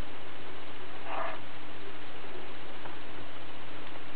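Steady background hiss with a faint low hum, and a brief soft rustle about a second in.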